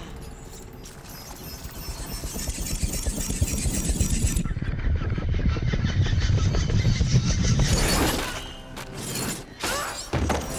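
Action-film soundtrack: dark, low score music swelling steadily louder, then a sudden rising sweep about eight seconds in and a few crashing hits near the end.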